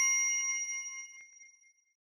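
Bell-chime notification sound effect from a subscribe-button animation, several high ringing tones dying away and gone about three quarters of the way through.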